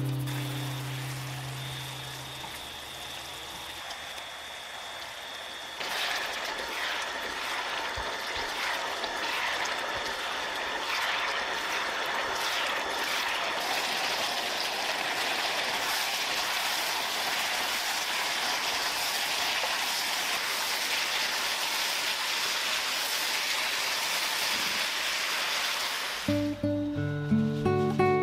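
Food sizzling in a hot pan: a steady hiss that grows fuller and brighter, with crackles, about six seconds in. Background music fades out at the start and comes back near the end.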